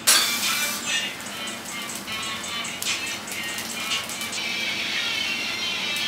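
Background music: a track with a steady beat that comes in abruptly at the start.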